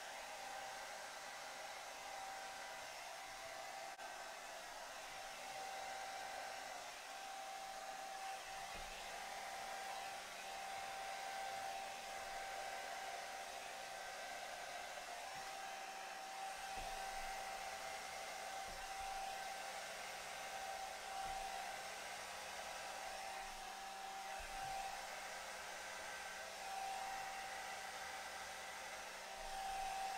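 Remington D3010 hair dryer running on its cool setting, a steady rush of air with a constant whine, blowing wet acrylic paint outward across a canvas.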